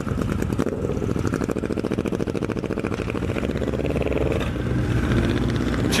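Honda CB1100SF X-Eleven's inline-four engine accelerating a motorcycle away from a standstill. The pitch rises in the first second, dips briefly at a gear change about four and a half seconds in, then climbs again.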